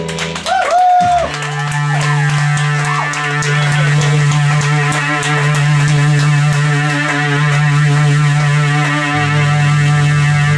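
Live rock band playing a droning passage: a held low note under sustained chords, with a few sliding, bending notes in the first seconds. A deeper bass note comes in near the end.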